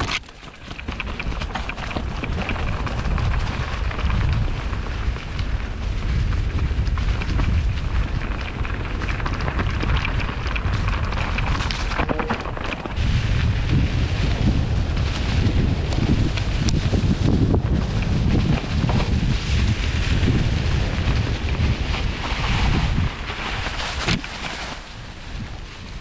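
Wind buffeting a helmet camera's microphone with a heavy, gusty rumble as a steel hardtail mountain bike rides fast down a trail covered in dry leaves. Tyres hiss and crunch through the leaves, with a few sharp knocks from the bike over roots and rocks. The rumble eases for a moment about twelve seconds in and again near the end.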